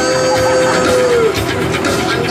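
Live band music with a drum beat, and a woman singing into a microphone who holds one long note and then slides down off it just past halfway.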